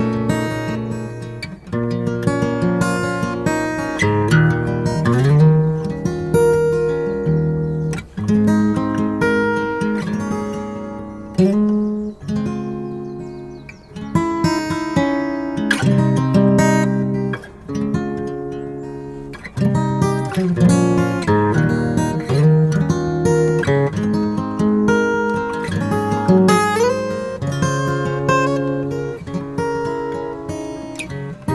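Solo steel-string acoustic guitar playing a slow instrumental, picked chords under a melody, with a couple of notes sliding upward in pitch.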